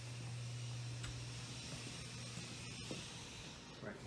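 Room tone: a steady low hum with an even hiss over it, and a few faint clicks.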